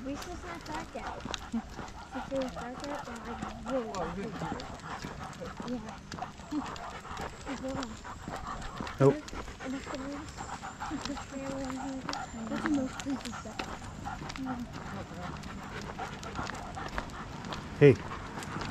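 A dog panting as it walks on a leash, with frequent light clicks of footsteps on a paved road.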